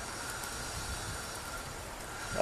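Steady outdoor background noise: an even low rumble and hiss, with a faint steady high tone running through it.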